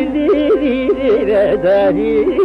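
Carnatic classical music in raga Mukhari: a male voice singing phrases that slide and swing in pitch, with violin following, over a steady drone.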